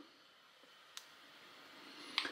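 Near silence with a single faint click about a second in, from the detented channel-selector dial of a Yaesu FT-70D handheld radio being turned.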